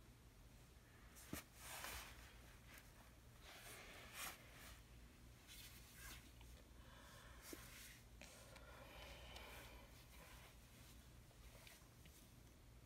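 Near silence: low room hum with faint rustling and a soft click as tarot cards are shifted on a cloth-covered table.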